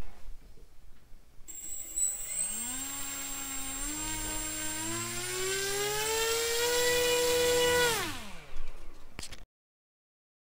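Small electric motor of a 3D-printed RC airboat spinning its propeller: the whine climbs in steps as the throttle is raised, holds high for about a second, then winds down quickly near the end. A steady thin high-pitched whine sits above it throughout.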